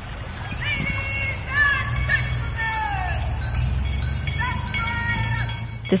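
Insects chirping in a steady, pulsing rhythm, with music fading in underneath: a low hum building up and several clear melodic tones, some sliding downward.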